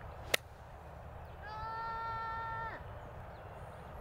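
Crisp click of a pitching wedge striking a golf ball on an approach shot, about a third of a second in. About a second later comes a long held voice-like note lasting over a second, dropping in pitch as it ends.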